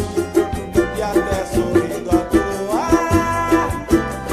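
Cavaquinho strummed in a rapid, even rhythm, played along with a recorded song; a melody line slides up in pitch about three seconds in.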